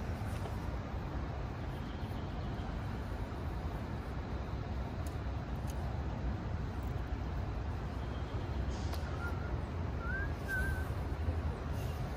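Steady low outdoor rumble, with a few short, thin bird chirps near the end.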